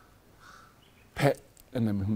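A bird calling faintly, two short calls in a pause, followed by a man starting to speak.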